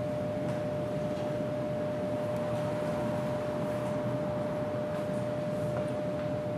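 Steady room noise: an even hiss with one constant mid-pitched hum running through it.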